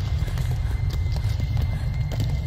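Electronic part of a saxophone-and-electronics piece: a loud, dense low rumble with irregular clattering clicks over it and a thin steady high tone held throughout.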